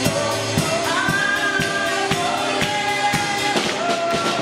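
Gospel singing: a woman's voice holding and sliding between notes, backed by other voices, over a steady percussion beat of about two strikes a second.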